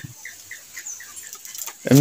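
Faint, short high chirps from a bird, several a second, under a pause in talk; a woman's voice starts near the end.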